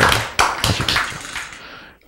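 A quick run of sharp taps or hand claps, about four a second, dying away over the first second and a half.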